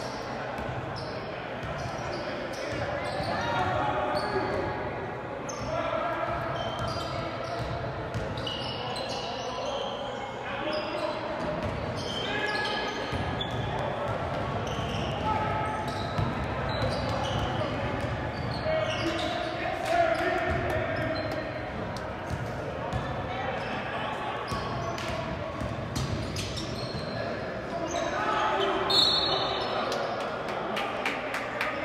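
Basketball game sounds in a gym: players' and spectators' voices calling out, with a basketball bouncing on the hardwood court and scattered sharp knocks.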